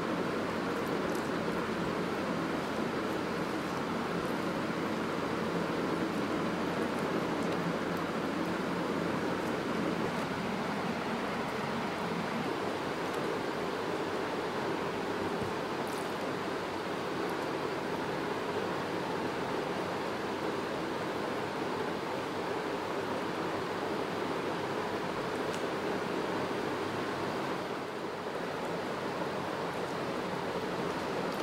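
Steady background noise: an even hiss with a faint low hum underneath, unchanging throughout, with only a couple of faint clicks.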